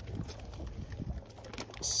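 Low wind rumble on the microphone over an aluminium boat, with faint scattered knocks and rustles as a landing net is handled.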